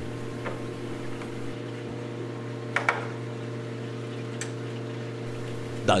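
Steady low hum of the aquarium's running equipment under the stand, with a faint hiss. A few light clicks and taps come as the algae scrubber's spray rod and screen are set back in place, two of them close together about three seconds in.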